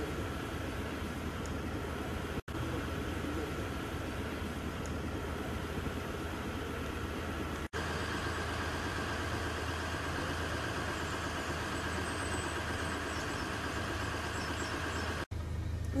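Steady outdoor street noise with the low, even hum of a car engine idling, cut off abruptly for an instant three times, about two and a half, eight and fifteen seconds in.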